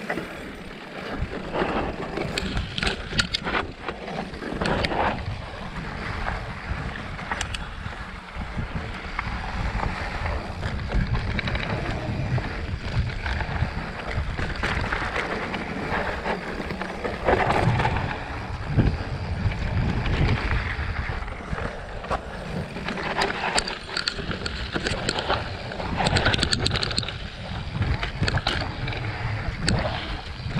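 Mountain bike riding fast over a rough dirt trail: tyres running on dirt and rock, and the bike knocking and rattling over bumps many times, with wind on the microphone.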